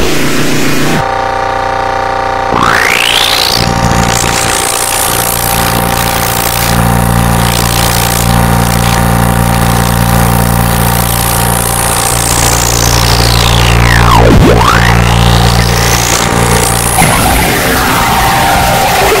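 Heavily distorted, effects-processed remix audio: a loud, dense mix of droning tones and noise. A high whistling sweep rises early on, then falls steeply about fourteen seconds in and rises again near the end.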